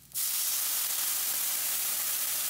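Sake poured into a hot wok of oil-fried chopped butterbur buds, hitting the pan with a sudden loud hiss just after the start and then sizzling and boiling off as steam, steady and even.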